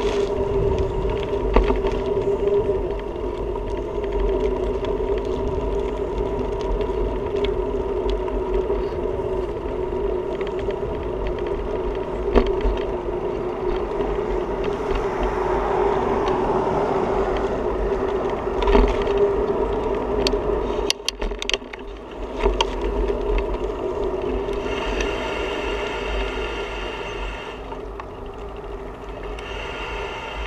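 Ride noise from a bicycle-mounted camera rolling along a sidewalk: wind rumbling on the microphone and a steady droning hum, broken by a few sharp knocks as the bike goes over bumps and cracks.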